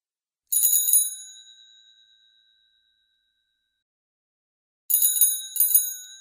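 Classic bicycle bell rung with a quick trill about half a second in, its ring fading away over about two seconds. After a silent pause it is rung again, two quick trills close together, still fading near the end.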